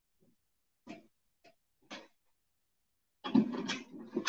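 A few faint, short knocks about a second apart, like footsteps coming back into a small room. Near the end comes a louder, wordless vocal sound from a woman.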